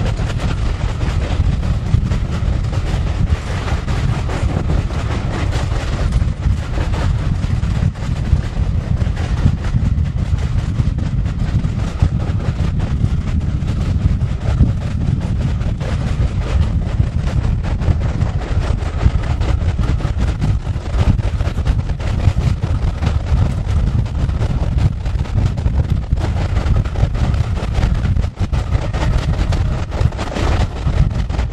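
Steady low rumble of a moving train heard from on board, with heavy wind buffeting on the microphone.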